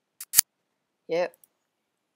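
Two sharp clicks in quick succession, the second louder, followed by a short spoken word.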